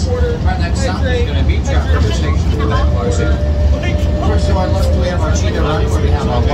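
Zoo mini train running, a steady low rumble from the ride, under people talking. A steady tone joins in about three seconds in.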